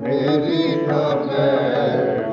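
Sikh kirtan: a man singing a Gurbani hymn with a wavering, ornamented line over steady harmonium tones. The singing resumes after a brief dip at the very start.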